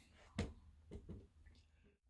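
Quiet handling noise: one short knock about half a second in, then a few faint soft rustles.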